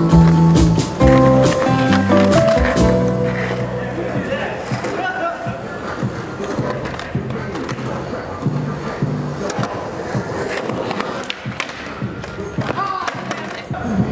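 Music for about the first four seconds, then a skateboard on rough concrete: wheels rolling, with irregular sharp clacks and knocks from the board hitting the ground and ramp.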